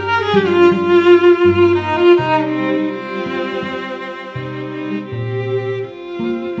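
Two cellos playing a slow duet: a melody above a low line of held bass notes, with the melody sliding down just after the start.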